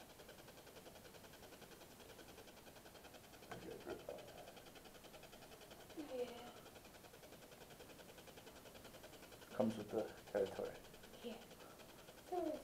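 Quiet room tone broken by a few faint, brief voice sounds: a short falling vocal sound about six seconds in and low murmured speech near ten seconds.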